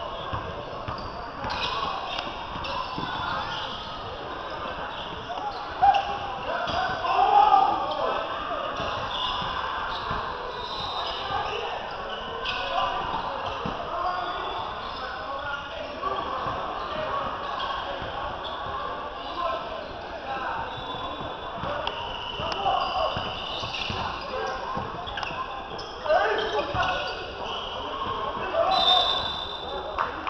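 Basketball game sounds in a large gym: a ball bouncing on the hardwood court under a steady mix of players' and spectators' voices, with a few sharper thumps.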